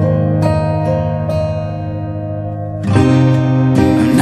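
Instrumental passage of a pop ballad recording with no singing: ringing guitar notes and chords, with a louder new chord struck about three seconds in.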